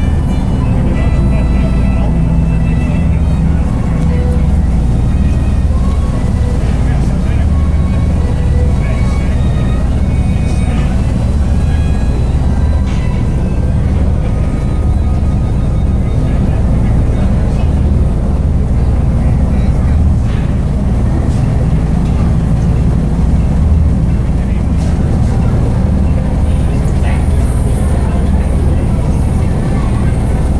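Tour boat's engine running with a steady low rumble, heard from inside the passenger cabin, with indistinct voices over it.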